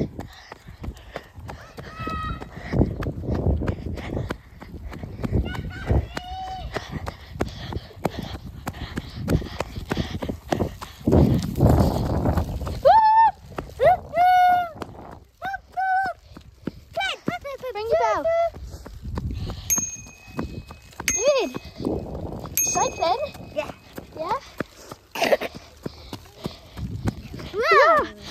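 Running footsteps on a tarmac path and wind rumbling on a handheld phone microphone, with high-pitched children's voices and squeals breaking in throughout, most in the second half. A few brief high-pitched tones sound in the second half.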